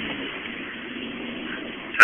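A Honda car heard from inside its cabin as the accelerator is floored and the tires spin on the wet road: a steady rushing noise with a low engine note underneath.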